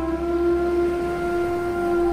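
Soft instrumental music in which a woodwind holds one long steady note, reached by a short upward slide, over quieter sustained accompaniment and a soft hiss.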